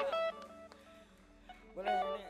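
Electric guitar playing a few single notes that ring and fade away, with a short spoken word near the end.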